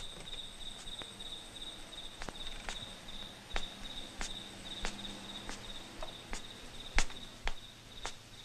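Crickets chirping steadily in a high, pulsing trill, with scattered sharp taps over it, the loudest about seven seconds in.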